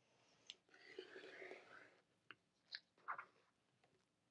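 Near silence, with a few faint clicks and one brief soft rustle about a second in, from handling a quilting ruler, rotary cutter and fabric on a cutting mat.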